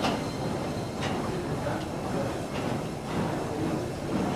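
Steady gym background noise, a continuous rumbling hum with faint distant voices underneath.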